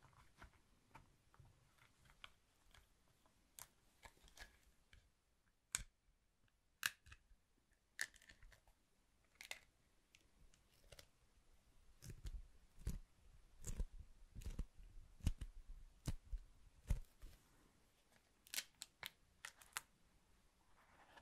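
Honeycomb beeswax sheet being handled, folded and creased by hand on a cloth: faint, scattered crackles and sharp snaps of the wax, with a busier run of crackles and soft thuds in the second half as the fold is pressed down.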